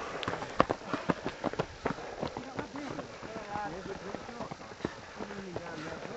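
Fell runners' feet hitting a dry, stony hill path in quick, irregular scuffs and knocks as they run past, with spectators' voices faintly in the background.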